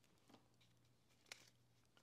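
Near silence: room tone with a faint steady hum and two faint soft clicks, a third of a second in and about a second and a quarter in, from a clear plastic cash-envelope binder being handled.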